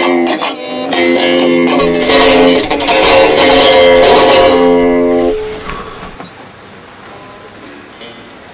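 Electric guitar strings jangling and ringing loudly as the guitar is swung and dabbed against the canvas as a paintbrush, sounding clusters of notes and chords. The ringing stops about five seconds in and dies away.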